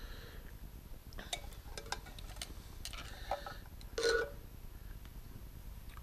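Faint clicks and ticks of small wires and hand tools being handled on a workbench, with one brief louder sound about four seconds in.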